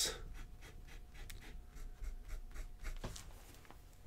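A broad-nibbed Platinum 3776 fountain pen drawing quick hatching strokes on notebook paper: a faint run of short nib scratches that trails off near the end.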